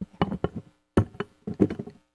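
Handling noise at the council dais: sharp knocks and taps on the desk near a microphone, in several quick clusters, as papers are picked up.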